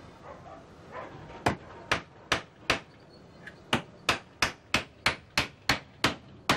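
Hand hammer striking a wooden packing crate. Four blows about half a second apart, a short pause, then a faster run of about seven blows, roughly three a second.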